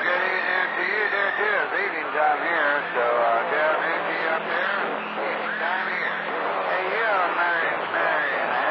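Men's voices coming in by skip on CB channel 28 through the radio's speaker, too garbled for words to be made out, over a steady low hum.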